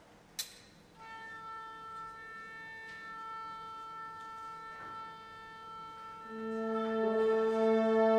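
A sharp click, then a solo instrument holds one long steady note from about a second in. About six seconds in the orchestra enters beneath it on a lower sustained chord, and the sound grows louder.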